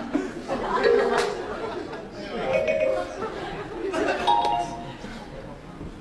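Indistinct voices without clear words: a few short vocal sounds over background chatter.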